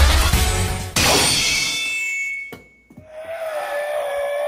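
Dramatic music cut short about a second in by a sudden hit sound effect that rings out and fades. After a brief near-silence, a steady ringing tone comes in and holds.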